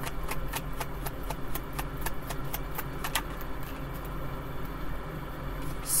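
A deck of tarot cards being shuffled by hand: a quick run of card clicks, about five a second, for the first three seconds, then softer handling, over a steady low hum.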